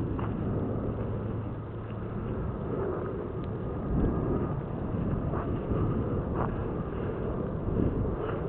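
Wind buffeting the microphone in a steady low rumble, with a few faint brief knocks.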